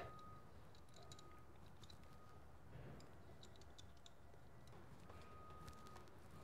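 Near silence with a few faint small clicks of a metal brake-line bolt and its sealing washers being handled in the fingers.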